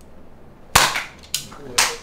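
Toy foam-dart blaster firing: three sharp cracks within about a second, the first the loudest.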